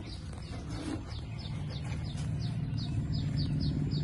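A bird chirping in a quick run of short, falling notes, about four a second, growing stronger from about a second and a half in, over a steady low rumble.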